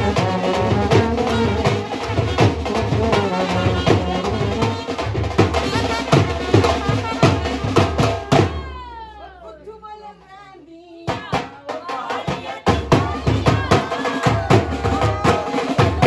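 Wedding band music: trumpet and clarinet melody over a steady dhol drum beat. Just past the middle the music drops away for a couple of seconds with a falling glide, then the drumming starts up again.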